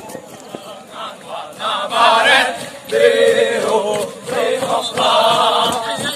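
A group of men singing a running cadence in unison while jogging, in sung phrases about a second long with short breaks between them.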